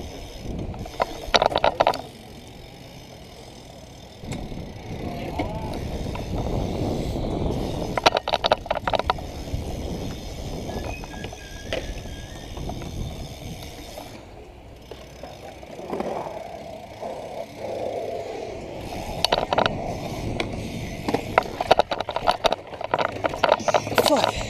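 BMX bike tyres rolling over concrete skatepark ramps, a rumble that swells and fades as the bike speeds up and slows. Several short bursts of rapid clicking come from the bike, about a second each, twice in the first half and twice more near the end.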